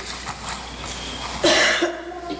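A man coughs once, loudly and briefly, about one and a half seconds in.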